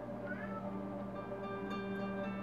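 Sustained music from a TV drama's soundtrack, held notes layered in several voices, with a brief rising squeal about a third of a second in.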